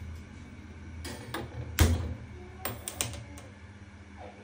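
Clicks from a gas hob burner being lit: one sharp click a little under two seconds in, then a quick run of clicks near the three-second mark, over a low steady hum.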